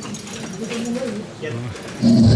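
Indistinct voices of several people talking quietly, with no clear words.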